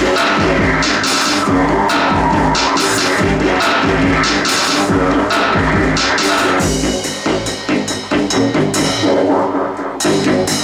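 Live industrial electro-punk music: an acoustic drum kit with busy cymbal and drum hits over an electronic synthesizer part. About two-thirds of the way through, the drum strokes drop out, leaving the synthesizer sounding on its own, a little quieter.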